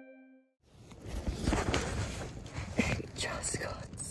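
Strong wind buffeting a tent, heard from inside: gusting noise with the fabric flapping and rustling, the tent loose because the wind has ripped its stakes out of the ground. It starts suddenly about half a second in, after a sustained ambient-music tone fades.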